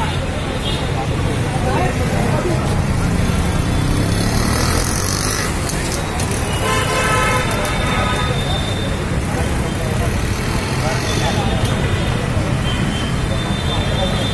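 Busy street traffic with a crowd talking over it, a continuous loud rumble of engines. A vehicle horn sounds for about a second, about seven seconds in.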